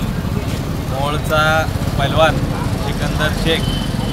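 Men's voices talking at close range over a steady low rumble of street noise.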